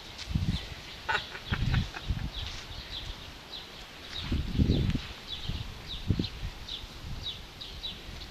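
A small bird chirping repeatedly, about two to three short chirps a second, with several low rumbling thumps on the microphone, the loudest about halfway through.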